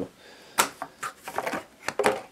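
Stiff die-cut cardboard counter sheets being handled and lifted in a cardboard game box: a run of sharp clicks and taps, about half a dozen.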